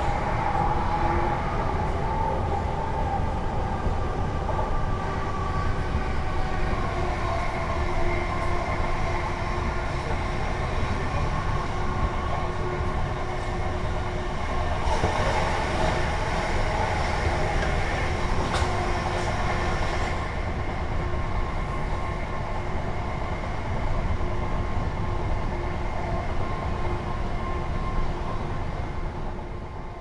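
Interior of a Class 376 Electrostar electric multiple unit running at speed: a steady low rumble of wheels on track with a whine of several steady tones from the traction equipment. The noise gets rougher and louder for a few seconds about halfway through.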